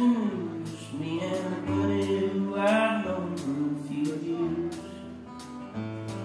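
Live country band playing a song between sung lines: strummed acoustic guitar, electric bass and a drum kit keeping a steady beat.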